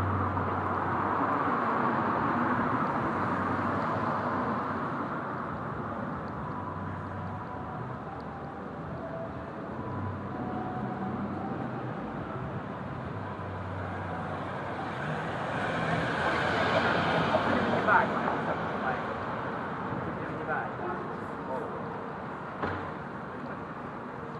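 City street traffic going by: a steady hum of engines and tyres, with one vehicle passing closer and louder about two-thirds of the way through.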